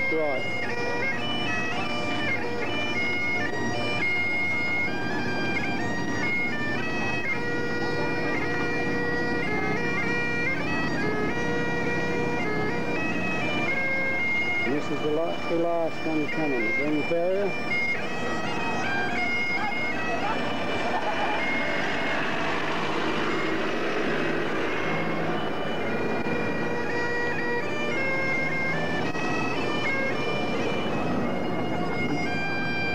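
Bagpipes playing a tune, the melody stepping from note to note over a steady drone.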